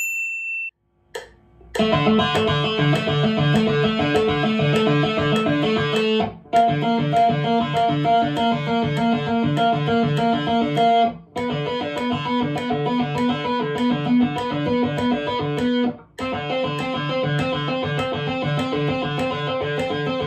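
A short high chime at the start, then an electric guitar playing fast, evenly picked notes on the D string in four runs of about four and a half seconds each, with short breaks between. It is a finger independence exercise: the fingers are held down chromatically at the 7th fret and one finger at a time is lifted, so the notes shift from run to run.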